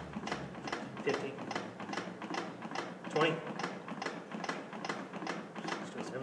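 Chest of a CPR training manikin clicking in a quick, even rhythm under repeated hand compressions, with a man counting the compressions aloud between clicks.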